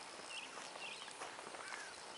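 Quiet open-air ambience with a few faint, brief high chirps and soft rustles.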